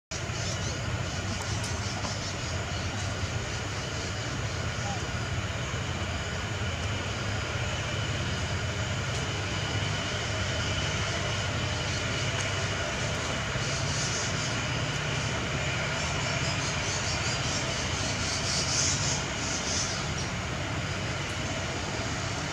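Steady outdoor background noise with a low hum underneath, unchanging throughout, with brief hissy patches in the upper range late on.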